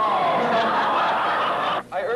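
A roomful of people laughing together, many voices at once, cutting off abruptly near the end.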